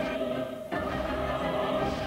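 Choral music with long held notes. The upper voices drop away briefly before a second in, then come back.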